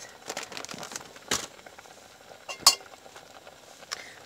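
Metal spoon clinking against a stainless steel soup pot: two sharp clinks about a second and a half apart, with lighter taps in between.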